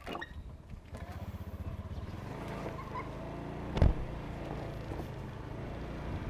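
A motor scooter's small engine running steadily at low revs, with one loud sharp thump about four seconds in.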